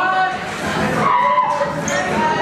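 Squeaks and skids from a breakdancer's shoes and body moving on a wooden floor, with several squealing pitches that glide and hold, heard over voices.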